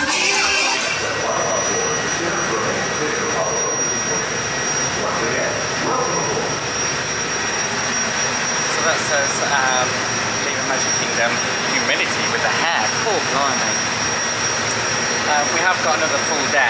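Engine of a small passenger launch running steadily on open water, with a thin high whine over the wash and wind noise. Parade music is heard briefly at the very start, and people's voices talk over the engine from about halfway on.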